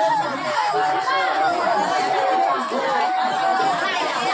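Side-blown bamboo flute playing long held notes that step between a few nearby pitches, with people chattering around it.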